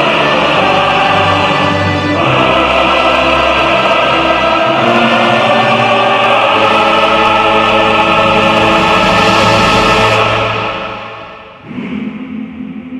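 Choral music: a choir singing with instrumental accompaniment, sustained chords that fade out about ten seconds in. Quieter new music starts just before the end.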